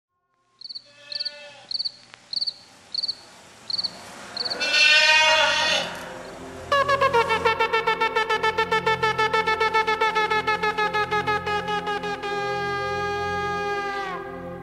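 Shofar blasts: one long blast, then a rapid quavering run of short pulses, about seven a second, that settles into a held note. Short high chirps repeat about every half second before the first blast, and a low drone lies under the later blasts.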